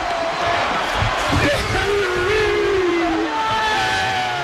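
Stadium crowd noise with cheering and shouting on the sideline, including one long, slightly falling shout through the middle.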